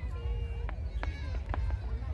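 Aerial fireworks going off: a few sharp cracks in quick succession over a steady low rumble, with people's voices mixed in.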